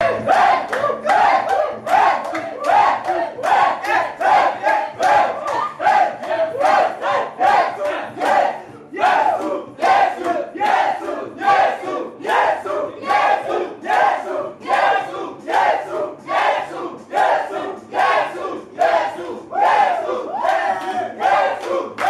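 A crowd of children and adults chanting together in a worship chant, loud shouted phrases repeating in a steady rhythm about twice a second.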